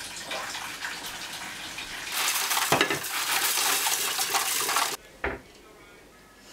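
Dishes and cutlery clattering and scraping while being washed up by hand, louder from about two seconds in and cutting off suddenly near the five-second mark, followed by a single short knock.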